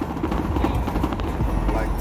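Van driving on the road, heard from inside the cab: a steady low rumble of engine and tyres with a busy rattling clatter from the cab.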